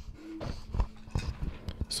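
Handling noise from a corded handheld microphone being passed between people: a few faint scattered knocks and rubs.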